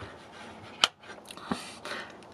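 Surface-mount marine circuit breaker switched by hand, snapping with one sharp click a little under a second in, then a fainter click about half a second later.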